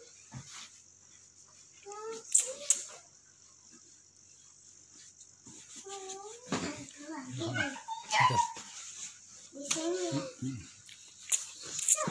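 Short bursts of voice, a young child's high-pitched calls among them, with rustling and a few soft knocks from a blanket being handled on a bed.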